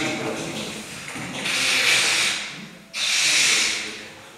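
Felt blackboard eraser wiped across a chalkboard in two long hissing strokes, the second starting about three seconds in.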